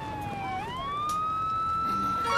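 A siren-like wailing tone in the intro of the backing music. A single tone slides slowly down, swoops back up about half a second in, and then holds steady, between phrases of plucked notes.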